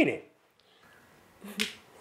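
The tail of a man's sentence, then a pause broken by a single short, sharp click about one and a half seconds in, over faint room tone.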